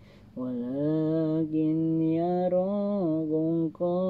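A man reciting the Quran aloud in a melodic chant, holding long drawn-out notes that slide gently in pitch. He pauses briefly for breath at the start and again near the end before carrying on.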